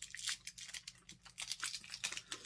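Candy wrapper crinkling in quick, irregular crackles as an individually wrapped chewy candy is handled.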